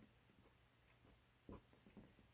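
Faint strokes of a Sharpie marker on paper, one short scratchy stroke about one and a half seconds in; otherwise near silence.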